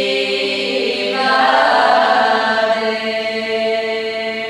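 Bulgarian women's folk choir singing a cappella in close harmony, holding long chords over a steady low note. About a second in, a higher voice part enters and the chord swells, then holds.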